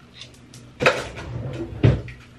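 Two sharp knocks about a second apart, with a clatter of handled objects between them: hard things being moved and set down around a bathroom counter or cabinet.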